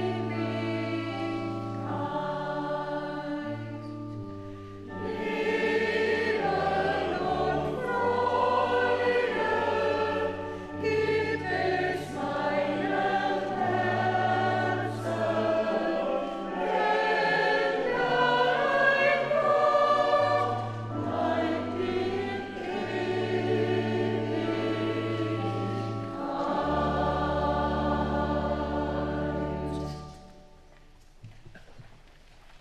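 Mixed church choir of men and women singing in parts over sustained low accompanying notes, with a short dip about four seconds in. The singing stops right at the end.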